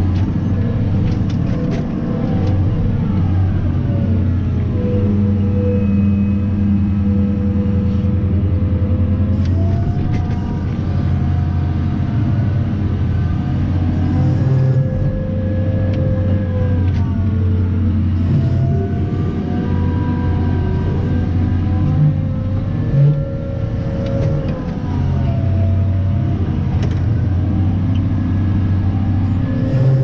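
Cat 994 wheel loader's V16 diesel engine heard from inside the cab: a steady low drone with whining tones that rise and fall as the engine revs and the hydraulics lift the bucket during a truck-loading pass. A couple of short thumps come a little past the middle.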